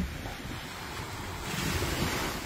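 Small waves washing on a sandy beach, with wind buffeting the microphone; the wash swells a little in the second half, and a brief low knock sounds at the very start.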